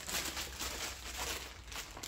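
Faint, irregular crinkling of small plastic parts bags from a brake caliper refurbishment kit as they are handled.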